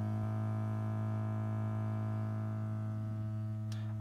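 Loudspeaker driven by a signal generator, sounding a steady low tone with a buzzy edge from its overtones. It is played loud enough that the speaker's safety is a concern.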